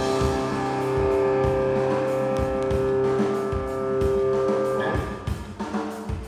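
A live band plays: electric guitars hold a ringing chord over a Premier drum kit. About five seconds in the held chord stops, and the drums come forward with lighter guitar.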